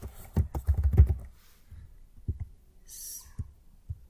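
Typing on a computer keyboard: a quick run of keystrokes in the first second or so, then a few single clicks, with a short hiss about three seconds in.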